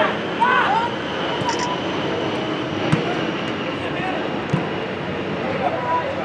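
Football players calling out on the pitch: one short shout about half a second in and another near the end. They sit over a steady outdoor background noise, with a single knock about three seconds in.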